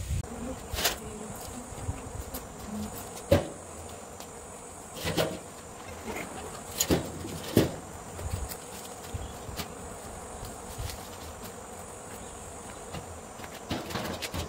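Scattered knocks and clunks, the sharpest about three and a half and seven seconds in, from handling the camera and a welded steel frame, over a steady high insect buzz.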